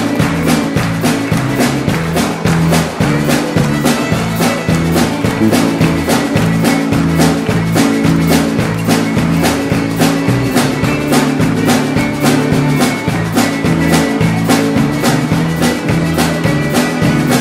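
Live country band playing an instrumental passage, with fiddle, acoustic guitars and a drum kit keeping a steady, even beat.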